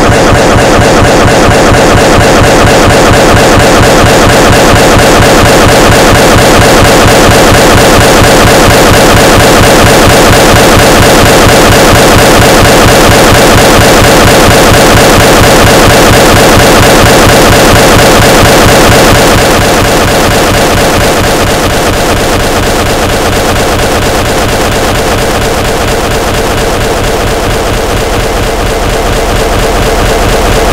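Podcast playback stuck in a glitch loop: a tiny scrap of audio repeating over and over as a harsh, very loud continuous buzz. It eases slightly about two-thirds of the way in. It is a fault in the broadcast software's playback.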